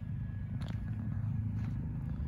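Steady low outdoor background rumble, with a few faint clicks.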